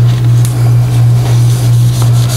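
A loud, steady low hum that dips slightly in level about three times a second.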